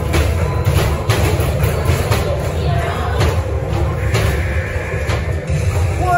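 Music plays over repeated thumps of basketballs hitting the backboard and rim of an arcade basketball hoop game, roughly one a second.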